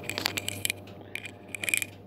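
Handling noise close to the microphone: irregular clicks and a scraping rustle over a low steady hum.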